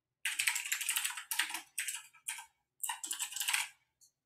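Typing on a computer keyboard: quick runs of keystrokes separated by short pauses, starting about a third of a second in and stopping just before the end.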